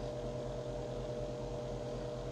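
A steady machine hum with two faint, even high tones and no other events.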